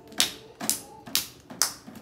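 Hard plastic wrestling action figures knocked together in play fighting: about five sharp clacks, roughly two a second.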